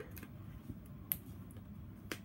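Faint paper handling as foam adhesive dimensionals are peeled off their backing sheet, with a few light clicks, the sharpest about a second in.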